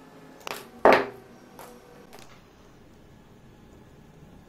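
Hand snips cutting a thin aluminium strip: a few sharp metallic snaps in the first half, the loudest about a second in.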